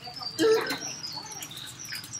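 Faint high chirping, like small birds, scattered through the background, with a short murmur of voices about half a second in.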